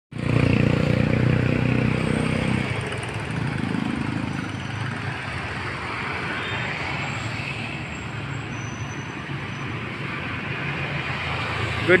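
Road traffic passing, with a motor vehicle's engine loudest in the first couple of seconds and again briefly a little later, then a steady hum of traffic.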